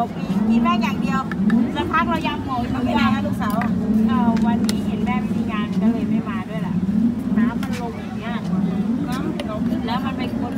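People talking, with voices throughout, over a steady low background rumble.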